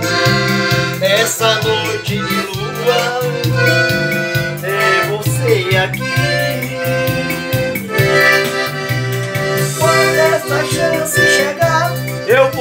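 Piano accordion playing a melodic interlude over electronic keyboard accompaniment with a steady, repeating bass rhythm.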